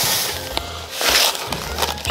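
Dry spelt flakes poured from a carton into a glass bowl, in two rustling pours, one at the start and one about a second in, over background music.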